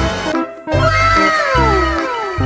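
Upbeat background music with a steady beat, over which a cat gives one long meow that falls in pitch, starting just under a second in.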